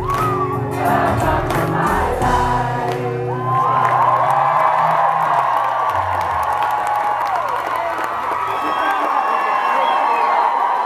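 A pop-punk band's final chords ring out and stop a few seconds in, with a short low hit near the middle. Then a concert crowd carries on cheering and singing together, many voices at once.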